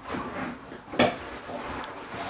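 A fountain pen being lifted off the paper and handled, with one sharp click about a second in.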